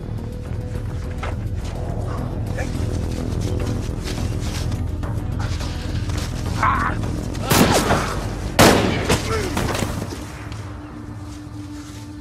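A low, tense film score runs under the scene. About two-thirds of the way in come two loud gunshots about a second apart, each followed by a short ringing echo.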